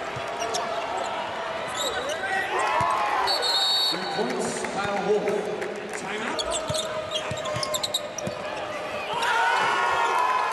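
Live court sound of a basketball game in an arena: the ball bouncing on the hardwood, sneakers squeaking in short chirps as players cut and stop, and steady crowd chatter and shouting underneath.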